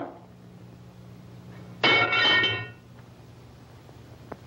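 One short, high-pitched whimper from a person's voice about two seconds in, held briefly at a steady pitch, over a steady low hum on the soundtrack.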